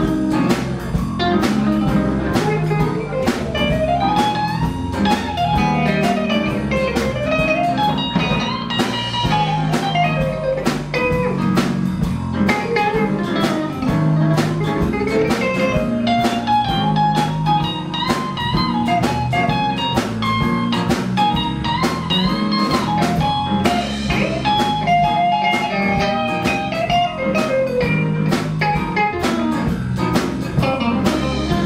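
A live band playing a blues-style number: electric bass, drum kit, electric guitar and piano, with a melodic lead line running up and down in long arching phrases.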